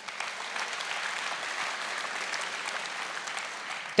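Large audience applauding steadily, a dense even clatter of many hands clapping.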